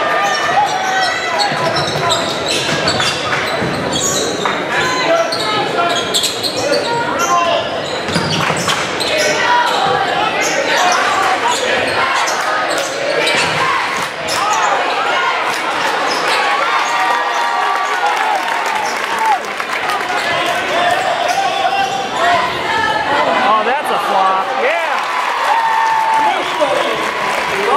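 Basketball game sound: the ball bouncing on the hardwood court and players' footfalls, under continuous crowd chatter and shouting from the bleachers.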